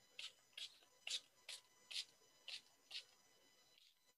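Hand-pump spray atomizer misting water onto wet watercolour paint to diffuse it: seven short sprays, about two a second.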